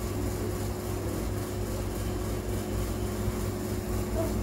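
A steady low hum with a constant tone and an even hiss over it, unchanging throughout.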